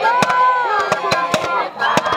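A group of young women singing a Zulu traditional song in unison, with one long held note that drops about halfway through. Sharp claps keep a beat of about four a second.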